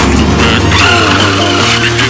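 Background music over a 1:10 scale radio-controlled touring car driving on concrete, its tyres skidding.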